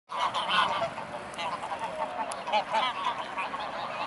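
A flock of greylag geese honking, many short calls overlapping one another, loudest in the first second.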